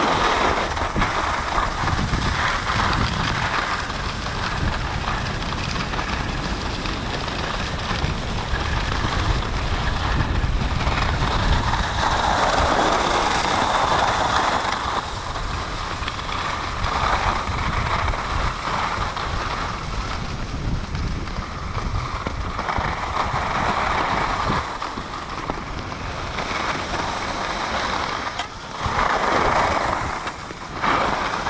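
Skis sliding and scraping over groomed snow, the hiss swelling several times as the skier turns, with wind buffeting the microphone.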